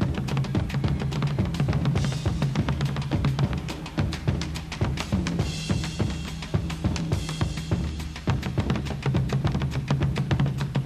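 Live rock drum kit solo from a 1980s concert recording: a fast, dense run of tom, snare and bass drum strikes, with cymbal crashes washing over it twice, about two seconds in and again around the middle, over a held low note.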